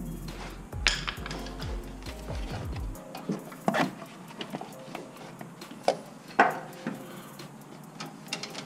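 Scattered metallic clicks and knocks of a screwdriver and hose clamp as a supercharger's rubber intake tube is worked loose, with a few sharp clinks through the middle and near the end. Background music with a bass line plays under the first few seconds and stops abruptly.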